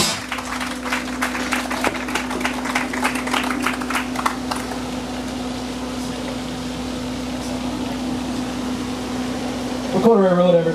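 Outdoor audience applauding, a spread of many hand claps that thins out and dies away about halfway through, just as the band's song ends. After that there is only a steady low hum over background noise.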